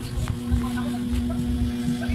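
Electric hair clippers running with a steady hum while cutting hair at the back of the neck.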